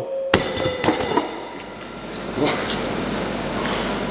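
A 180 kg wooden strongman log with steel plates dropped from overhead onto foam crash pads: one heavy impact about a third of a second in, then a few smaller knocks as it settles.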